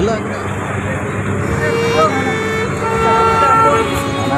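Vehicle horns sounding in street traffic: held, steady tones for about two seconds from midway, changing pitch partway, over people talking.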